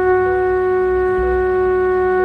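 Background film music: one long held note in a reedy, wind-instrument-like tone, steady and unchanging, over a low bass.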